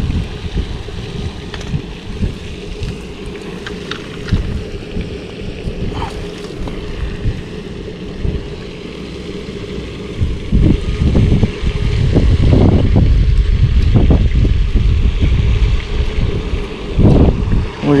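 Wind rumbling on the microphone in gusts, growing stronger about ten seconds in.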